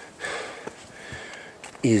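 A man's quick breath in through the nose in a pause between sentences, a short rush of air just after the pause begins; he starts speaking again near the end.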